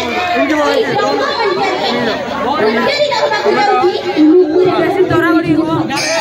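A woman's voice speaking into a microphone, amplified over a public-address system in a large reverberant space, with one long drawn-out syllable near the end.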